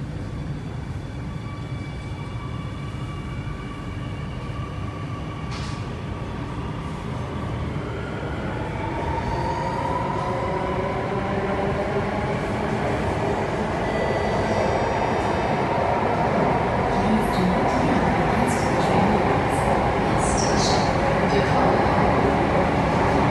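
Alstom Metropolis C830C metro train heard from inside the car as it pulls away and accelerates. A steady rumble grows louder while the traction motors' whine rises in pitch from about a third of the way in, with a few short high squeals near the end.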